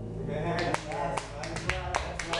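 Scattered handclaps from a few people, with voices, just after a song stops, over a steady low hum.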